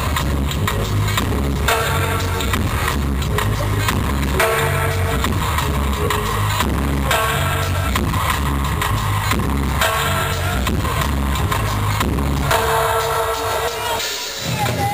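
Live reggae band playing an instrumental passage through an arena PA, recorded from the crowd: a heavy bass line and drums repeat steadily under a melodic phrase that comes back every two to three seconds.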